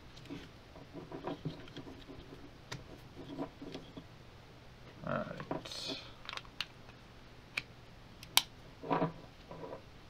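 Handling noise from fitting a cable and shotgun microphone into a plastic pistol-grip shock mount: scattered light clicks, taps and rustles, with one sharp click near the end.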